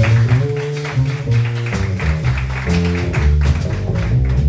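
A live jazz quintet playing: upright bass notes under keyboard chords and a moving melody line, with steady cymbal strokes from the drum kit.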